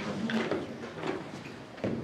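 Hall ambience of faint voices with a few short knocks and thumps, the loudest just before the end.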